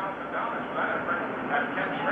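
NASCAR stock car V8 engines running on the track, a steady blended drone heard in a pause of the race commentary.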